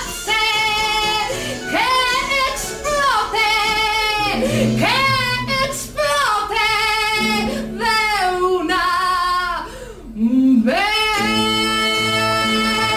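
A woman singing a slow song, holding long notes with a wavering vibrato, over a low steady accompaniment that comes in about four seconds in.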